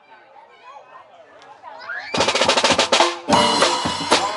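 Faint crowd chatter, then about two seconds in a band comes in loud: a drum kit with snare and bass drum hits, together with an acoustic guitar. The band stops for a moment just after three seconds, then comes back in.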